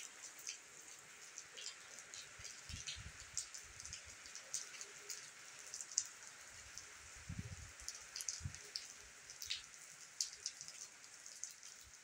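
Steady light rain falling on wet tiles and walls, with many sharp ticks of single drops hitting close by. A few brief low rumbles come about three seconds in and again around seven to eight seconds.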